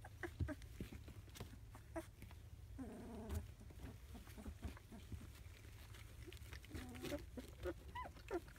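Three-week-old rough collie puppies moving about on puppy pads, with scattered small taps and rustles. Two short vocal calls come from the litter, one about three seconds in and one near the end, over a steady low hum.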